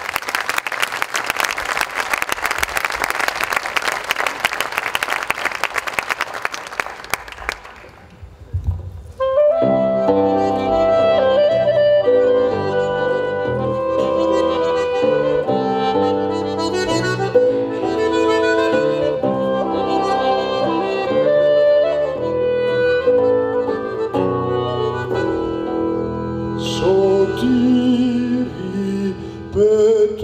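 Audience applause for about eight seconds, then a small folk ensemble begins a song's instrumental introduction, with accordion and reedy melodic lines over a held bass.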